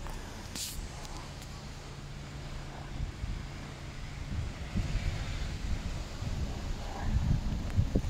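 Wind rumbling on the microphone, with a steady low hum for the first few seconds.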